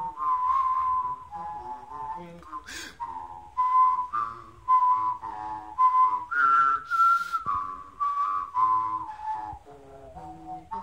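A person whistling a slow melody, note by note, with a lower voice sounding along with the whistle at the same time. The tune climbs to its highest note about six to seven seconds in.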